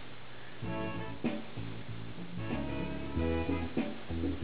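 A 1959 Magnavox 1ST228K stereo console, with its single-ended 6BQ5 (EL84) amplifier still on original capacitors, playing guitar music through its speakers. The music starts about half a second in, after a moment of faint hiss.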